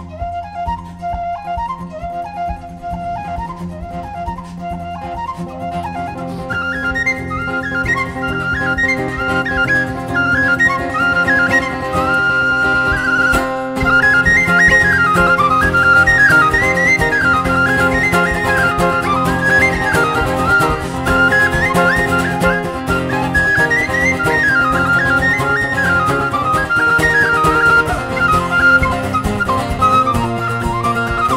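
Irish whistle playing a fast reel melody over acoustic guitar accompaniment. The tune runs in the whistle's low register for the first several seconds, then moves up to the high register and gets louder.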